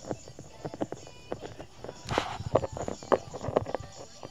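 Irregular light clicks and knocks of small plastic toy figures being tapped and hopped across a surface.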